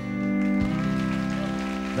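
A country band holding the final chord of a song, with audience applause rising in about half a second in.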